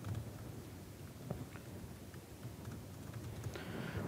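Faint, irregular keystrokes on a computer keyboard as code is typed into a text editor.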